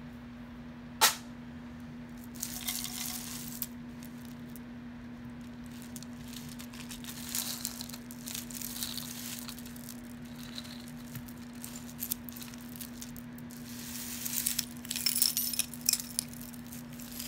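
Costume jewelry being handled: beads, chains and metal pieces clinking and rattling together in several short spells, with one sharp click about a second in. A steady low hum runs underneath.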